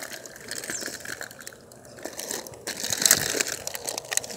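Plastic snack wrappers and packages crinkling and rustling as they are handled and shifted about in a cardboard box. The sound grows louder about three seconds in.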